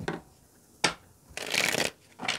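A tarot deck being riffle-shuffled by hand on a wooden table: a soft knock and a sharp tap of the cards, then a quick half-second flurry of cards riffling together near the end.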